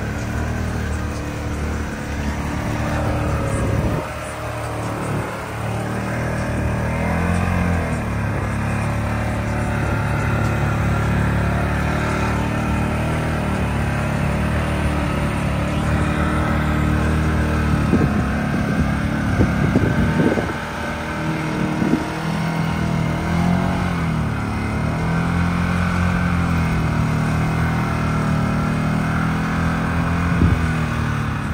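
Can-Am side-by-side engine running under load as it drives through a deep, muddy water hole, revving up and down several times in the second half.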